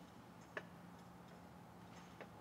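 Faint, irregular clicks, the clearest about half a second in, typical of a thurible's chains knocking against the censer as the Book of the Gospels is incensed before the reading.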